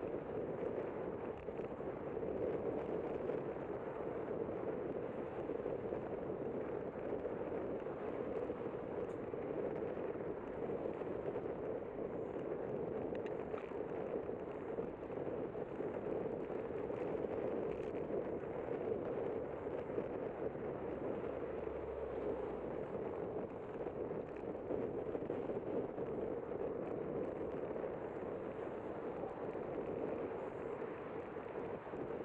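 Steady rushing wind and road noise on a moving bicycle's camera, with motor traffic in the lanes beside the bike path.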